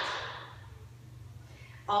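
The echo of a tap-shoe stamp on a studio floor dies away, leaving quiet room tone with a faint steady low hum. A woman starts speaking just before the end.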